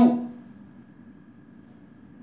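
Quiet room tone in a pause between words: a low, even background hiss with a faint, steady high tone. A man's voice trails off at the very start.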